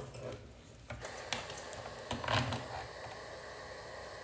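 Clicks and light rattling of a car antenna plug and cable being handled and pushed into the antenna socket on the back of a car radio head unit, over a faint steady hiss.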